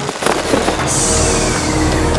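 Cinematic background music with a transition sound effect: a sudden hit just after the start, then a low rumble that swells about a second in.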